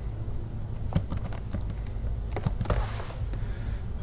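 Typing on a computer keyboard: irregular key clicks as a word is typed into a code editor, with a low steady hum underneath.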